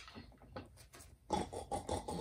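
A woman's voice imitating a pig, a few short choppy oinks starting about two-thirds of the way in, after some faint clicks.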